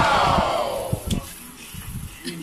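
A drawn-out shout or cheer from voices that is loudest at the start and falls in pitch as it fades over about a second and a half, with a few low thumps underneath.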